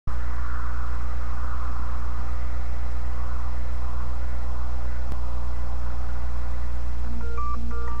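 A loud, steady low electrical hum runs under the recording. About seven seconds in, a simple melody of short, clean electronic-sounding notes begins, stepping between pitches.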